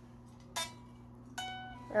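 Unplugged solid-body electric guitar: a short pick click about half a second in, then one string plucked about a second and a half in, ringing thin and quiet and fading, because the guitar is not plugged into an amp.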